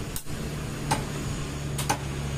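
Meat cleaver chopping raw chicken on a wooden log chopping block: sharp chops, each blade striking through the meat into the wood, with the last two close together near the end.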